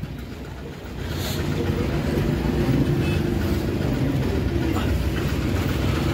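Swaraj 855 tractor's diesel engine running, getting louder about a second in and then holding steady.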